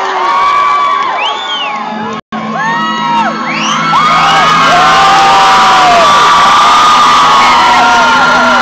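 Club concert crowd cheering, whistling and whooping at the end of a song, with many shrieks rising and falling over each other over a low steady drone. The sound cuts out for an instant about two seconds in, and the cheering swells louder about halfway through.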